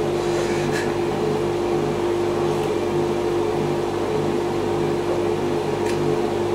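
A steady hum with one fixed mid-pitched tone over a low drone, from a running appliance.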